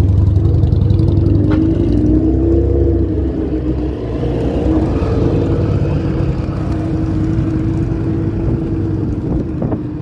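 A motor vehicle engine running close by in street traffic: a steady low rumble with an engine hum that rises briefly in pitch about two to three seconds in, then holds steady.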